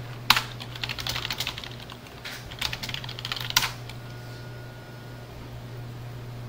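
Computer keyboard typing: a hard key press about a third of a second in, then two quick runs of keystrokes, the second ending in a sharp press a little past the middle, after which only a steady low hum remains.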